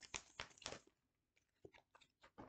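Deck of tarot cards being shuffled by hand, faint papery flicks coming fast in the first second, then a few scattered taps as the cards are handled.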